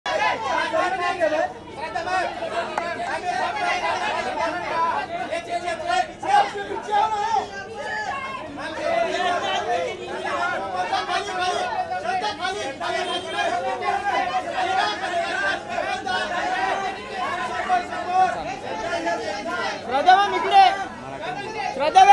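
Many voices talking over one another, a steady babble of overlapping chatter and calls from the photographers and crowd at a photo call.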